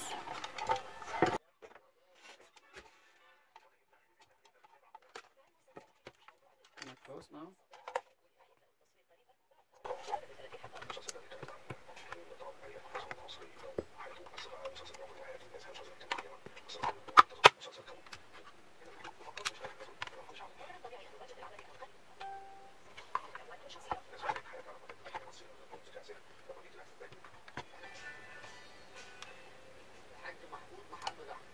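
Plastic router casing being handled and fitted back together: scattered clicks and knocks of plastic parts, with one sharper click about 17 seconds in. Near silence for the first several seconds, then a faint steady hum runs under the clicks.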